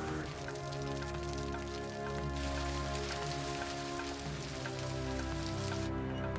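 Steady rain falling on leafy vegetation, which stops abruptly near the end. Under it runs background music of long held notes.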